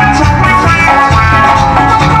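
Loud live band music over a stage PA system, with a steady bass line, drums and sustained melody notes.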